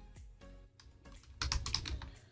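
Computer keyboard typing: a few faint scattered keystrokes, then a quick run of keys near the end as a word is typed.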